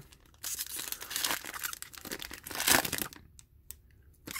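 A hockey card pack wrapper being torn open and crinkled by hand: a crackling rustle that starts about half a second in, peaks near three seconds and stops shortly before the end.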